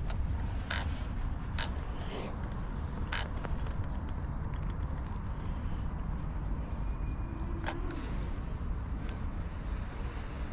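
Wind rumbling on the microphone, with a few sharp clicks and knocks from hands handling a drone remote controller.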